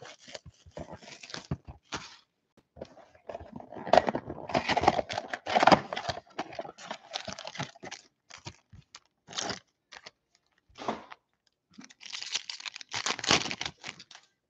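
Plastic shrink-wrap crinkling and tearing as it is stripped from a trading-card box, then foil card packs rustling and a pack being torn open near the end.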